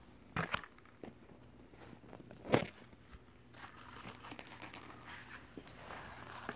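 Gift wrapping paper and paper gift bags crinkling and rustling as a cat noses and paws into the presents: a few sharp crackles in the first three seconds, then continuous crinkling through the second half.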